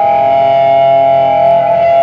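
Electric guitar ringing out a long held note through its amplifier, a steady sustained tone that does not change through the stretch.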